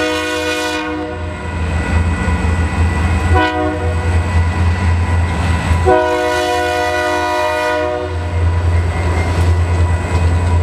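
A diesel freight locomotive's air horn sounds for a grade crossing, several tones at once, in a crossing sequence: a blast that ends about a second in, a short blast a few seconds later, then a long blast of about two seconds. Under it runs the steady low drone of the passing diesel locomotives.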